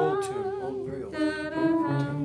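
Several voices singing wordless sustained harmony a cappella, the held notes wavering in pitch.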